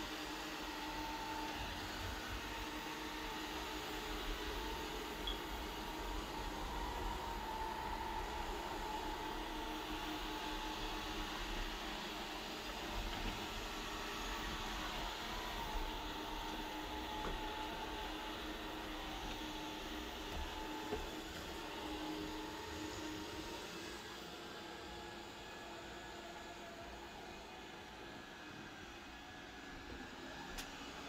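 Robot vacuum cleaner running across the floor: a steady mechanical hum of its motor and brushes, with a few faint clicks, a little quieter in the last few seconds.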